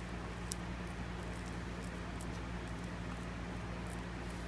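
Faint, scattered small clicks and wet ticks as glue-soaked sinew is pressed and worked into the previous sinew layer on a wooden bow back with a piece of river cane, over a steady low hum.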